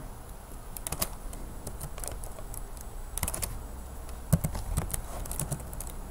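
Computer keyboard typing: a few keystrokes at a time in short clusters of clicks, near one second in, around three seconds, and again later on.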